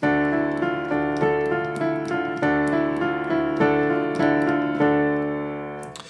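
Piano playing a D minor add2 chord (D, E, F, A) as an arpeggio, the notes struck one after another and left ringing, the sound fading near the end.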